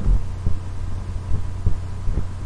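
Steady low electrical hum, with a few soft low thumps and faint clicks.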